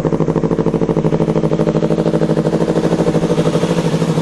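Yamaha R3's parallel-twin engine idling steadily through an SC Project exhaust, with an even, rapid pulse.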